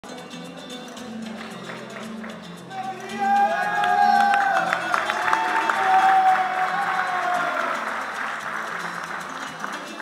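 Music with a repeating bassline, joined about three seconds in by louder applause and cheering voices with long held calls, which die down toward the end.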